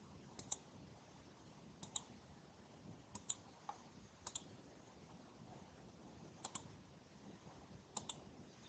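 Faint computer mouse clicks, mostly in quick double-click pairs, about five times over a few seconds, against low background hiss.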